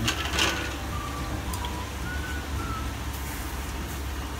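Steady low rumble of a gas burner flame under a pot of boiling water, with a brief burst of noise about half a second in.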